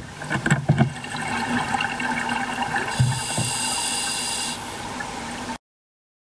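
Scuba regulator breathing heard underwater: gurgling bursts of exhaled bubbles just after the start and again about three seconds in, with a hiss of air over a steady watery background. The sound cuts off suddenly near the end.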